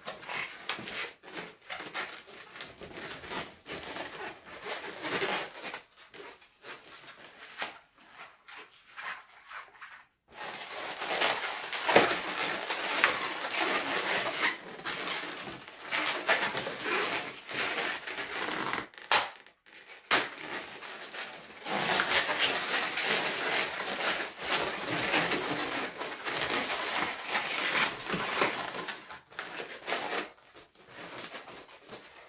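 Latex 260 modelling balloons squeaking and rubbing against each other and the hands as they are twisted and wrapped. The handling is lighter for the first ten seconds or so, then busier, with a short pause about two-thirds of the way through.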